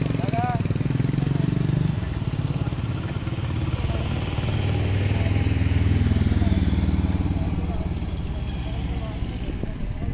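A motor vehicle engine running close by, its rumble building to a peak around six seconds in and then easing off.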